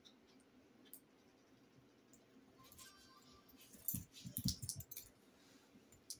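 A short flurry of sharp clicks and soft thumps between about three and five seconds in, over low room noise.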